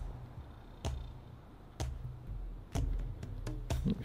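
Handling noise as a muddy glass bottle is turned over in gloved hands: a low rumble with sharp clicks and knocks about a second apart.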